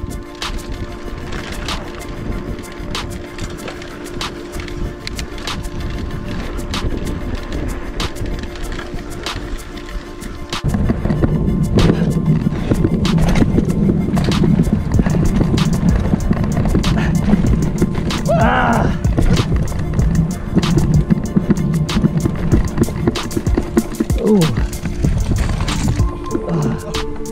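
Mountain bike riding fast down a dirt singletrack: tyre rumble on the loose trail with constant rattling and clicking from the bike, and wind on the camera that gets heavier from about ten seconds in.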